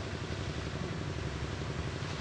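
A steady, low engine-like hum in the background, unchanging in level.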